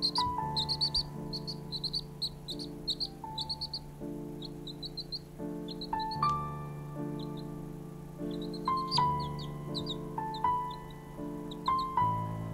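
A baby chick peeping, short high chirps coming in quick runs and then in scattered clusters. Under it runs background music of sustained keyboard chords.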